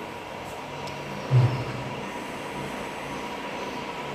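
Steady low rumbling background noise with a faint constant tone, broken by one short, louder low hum about a second and a half in.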